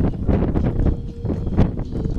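Wind buffeting the microphone: an uneven low rumble with scattered short crackles.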